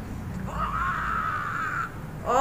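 Audio from the anime: one long, high-pitched cry that starts about half a second in and holds for over a second before stopping, over a steady low hum.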